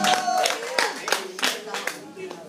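Small audience clapping, a spatter of separate claps with some voices in the room, thinning out toward the end.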